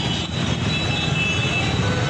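Busy street noise: motor vehicles running amid a crowd, a steady din with no single event standing out.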